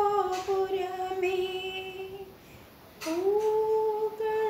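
A woman singing a devotional song unaccompanied, holding one long note until a little past two seconds in. After a short pause, a new phrase slides up into a held note just after three seconds.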